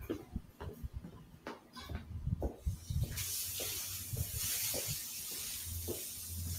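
Irregular light footsteps and knocks from someone walking while filming. About three seconds in, a steady high hiss starts over a low hum.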